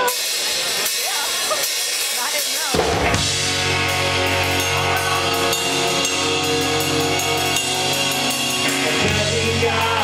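Crowd voices, then about three seconds in a live rock band comes in all at once with drum kit, electric guitars, acoustic guitar and bass, and plays on.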